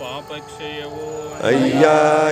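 Devotional chant in praise of rudraksha, sung on long held notes. A louder phrase begins about one and a half seconds in.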